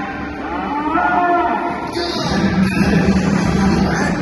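A triceratops call, played as a sound effect over an arena sound system: a low, drawn-out bellow that is strongest in the second half, over background music.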